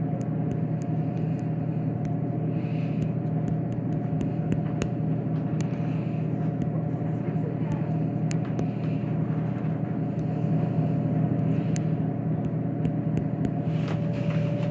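Coca-Cola vending machine's refrigeration unit running: a steady low hum with a higher steady tone above it and scattered light clicks.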